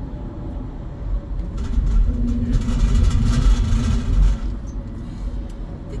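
Minivan road noise heard from inside the cabin while driving: a low engine-and-tyre rumble that swells for a couple of seconds in the middle, with a steady hum.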